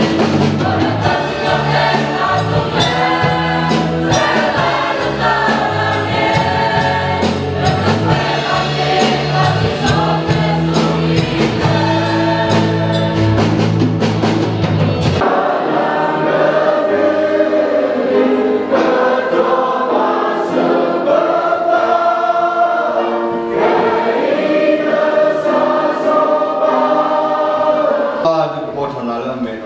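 Mixed choir singing a gospel hymn with keyboard and drum accompaniment. About halfway through the bass and drums drop out and the voices carry on over lighter accompaniment, fading near the end.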